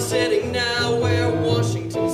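Live musical-theatre song: a singing voice over electronic keyboard accompaniment, with sustained chords underneath.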